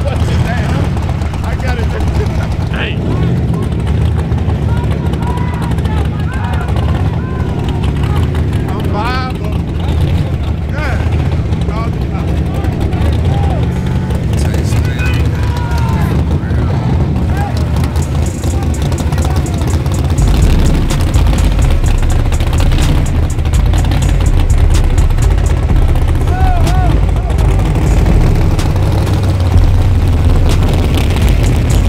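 Crowd voices shouting over a steady low rumble of race-car engines, the rumble growing louder about twenty seconds in.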